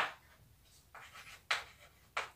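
Chalk writing on a chalkboard: a few short scratchy strokes, the loudest about one and a half seconds in.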